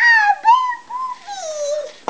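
A toddler's high-pitched wordless vocalizing: a few drawn-out, wavering sing-song sounds, the last one sliding down in pitch.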